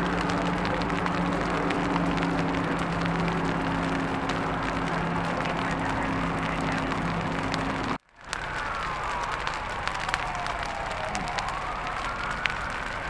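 Burning brush crackling with many small pops over a steady engine drone. After a sudden break about two-thirds of the way through, a siren wails, falling in pitch over a few seconds and then rising again.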